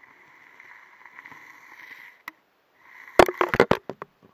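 Sounds picked up by a submerged camera probe through its housing: a faint steady whine at two pitches, then a quick cluster of loud knocks and rattles about three seconds in.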